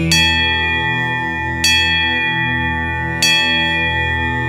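A bell struck three times, about a second and a half apart, each strike ringing on with long clear tones over a steady low drone.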